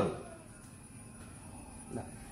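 A man's speech trailing off, then faint, even background room tone with no distinct sound.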